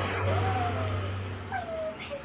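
Two short high cries from a baby, each falling in pitch, over a low steady hum that stops about three-quarters of the way through.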